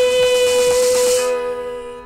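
A woman's voice holding one long, steady final note of a worship song over musical accompaniment, with a bright hiss above it that stops a little after a second in; the note then fades away at the end.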